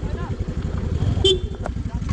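Motor scooter climbing a steep, rocky dirt track: a steady low rumble of engine and jolting ride, with faint brief shouts.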